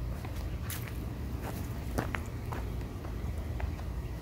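Footsteps of a person walking through a garden: scattered soft steps and small clicks over a steady low rumble of handling or wind noise on the microphone.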